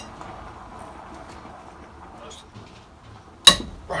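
A socket wrench on a cylinder head nut: quiet scraping of tool on metal, then, about three and a half seconds in, a single loud, sharp metallic crack with a short ring as the nut breaks loose.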